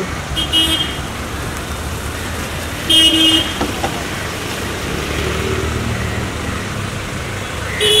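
Street traffic with a steady engine rumble, and two short car-horn toots: a brief one about half a second in and a louder one about three seconds in.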